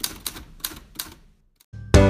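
A typewriter sound effect: a quick, uneven run of sharp key clicks, then a short pause. Background music begins near the end.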